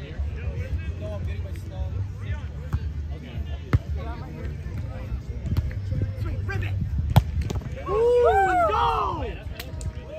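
Volleyball being played on grass: two sharp slaps of hands striking the ball, about four and seven seconds in, followed by a burst of loud shouting voices. Faint chatter and a steady low rumble run underneath.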